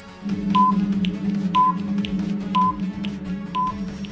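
Countdown timer sound effect: a short high beep once a second, four times, with softer ticks in between, over steady background music.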